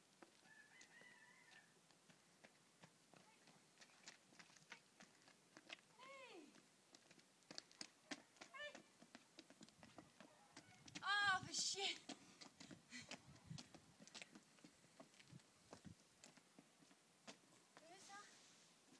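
Quiet, scattered clicks of a horse's shod hooves walking on an asphalt lane. About eleven seconds in comes a short call that rises and falls in pitch, the loudest sound, with fainter ones before it.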